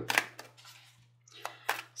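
A few soft clicks and rustles of a tarot deck being shuffled by hand, over a faint steady low hum.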